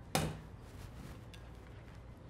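A single sharp knock just after the start, a plastic mesh sieve against the rim of a glass mixing bowl, followed by faint quiet handling.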